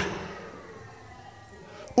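The echo of a man's preaching voice dying away in a large hall, then faint, steady room tone.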